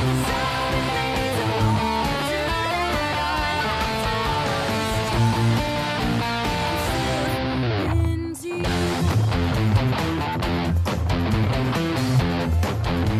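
Electric guitar playing the melody high up the neck, over music with a steady low bass. The music drops out briefly about eight seconds in.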